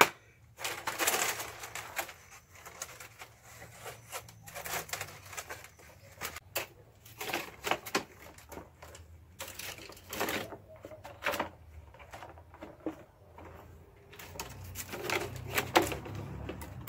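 Split carrizo cane strips and spokes rustling, creaking and clicking irregularly as a basket is woven by hand.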